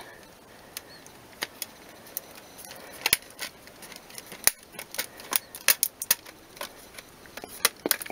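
Plastic back cover of a Nook tablet being pressed onto its frame by hand: a string of irregular sharp clicks as the snap clips catch.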